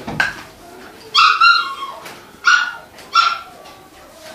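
A small dog barking in short, high-pitched yaps: a longer bark about a second in, then two single barks about two and a half and three seconds in.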